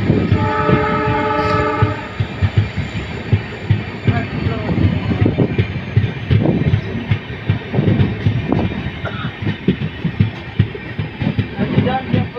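A diesel locomotive's horn sounds once, briefly, just after the start, heard from a coach further back in the train. Through the whole stretch the coach's wheels run over the rails with a steady rolling noise and a busy clickety-clack of knocks, heard through an open coach door.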